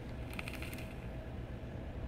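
Faint breathing as a vaper draws on a dripper atomizer and then exhales the vapour: a soft, breathy hiss over a low, steady room hum.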